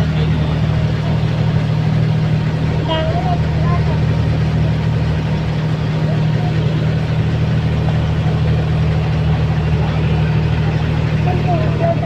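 A bus engine running steadily with a constant low drone, heard from on board as the bus moves slowly through a traffic jam. Faint voices come through briefly about three seconds in and again near the end.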